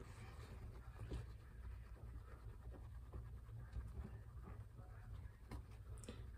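Faint rustling and scratching of a paper towel rubbed over a baby squirrel's underside to stimulate it to pee, with a few soft clicks, over a steady low hum.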